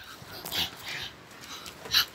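A dog making a few short, breathy sounds.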